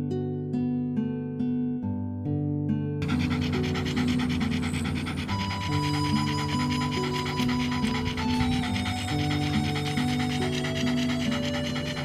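Shiba Inu panting heavily under piano background music. The panting comes in about three seconds in, after a stretch of piano alone.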